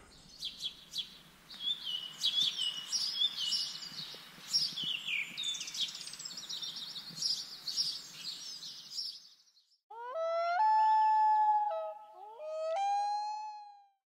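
A chorus of songbirds chirping and singing over a soft hiss for about nine seconds, stopping suddenly. After a brief gap come two long pitched calls, each sliding up into a held note.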